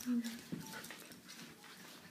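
A large dog and a small puppy play-fighting on a carpeted floor: a short low grunt right at the start, then quiet scuffling and a few faint taps.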